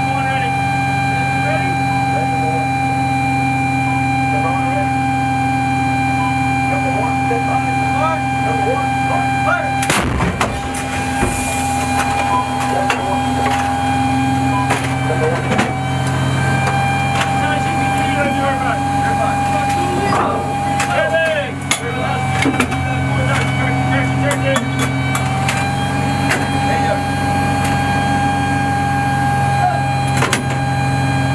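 Inside the turret of an M109A6 Paladin, the vehicle's running machinery keeps up a steady hum and whine. About ten seconds in, the 155 mm howitzer fires once, a single heavy blast. Metal clanks follow about twenty-one seconds in.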